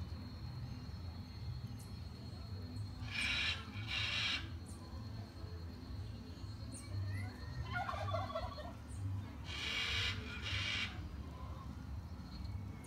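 Domestic fowl calling: two pairs of harsh half-second calls about six seconds apart, with a shorter, lower call between them. A steady high insect whine runs under the first half and stops about halfway.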